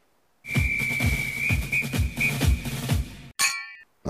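Short comic musical sting. A steady high whistle note plays over a beat of about two thumps a second, then it ends with a bright bell-like ding that rings out briefly.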